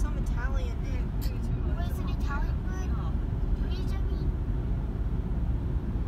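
Steady low road and engine rumble heard from inside a moving car's cabin at highway speed. A voice speaks over it for the first couple of seconds.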